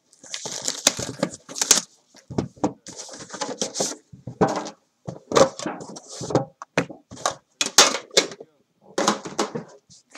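Cardboard boxes of trading cards being handled on a table: a steady run of scrapes, slides and knocks, with cardboard rustling in the first two seconds.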